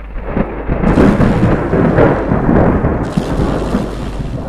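Thunder-like rumbling sound effect over a steady low hum, accompanying an animated title; it swells about a second in and eases slightly near the end.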